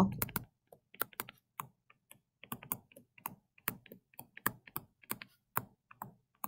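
Stylus pen tapping on a touchscreen while handwriting: faint, irregular light clicks, a few a second.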